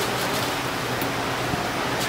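Steady hiss-like background noise with a couple of faint clicks.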